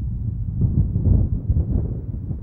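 Wind rumbling on the microphone, low and uneven.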